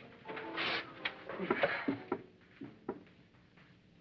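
A few light knocks and some shuffling as two people settle onto metal folding chairs, with a brief low murmur of voice; quiet in the second half.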